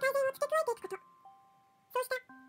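Spoken narration over soft music-box style background music, whose notes are heard as steady held tones. The voice pauses for about a second in the middle, leaving only the music.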